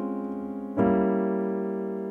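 Piano playing a held jazz chord, the E-flat 7 with flat 9, dying away, then a second chord struck a little under a second in and left to ring.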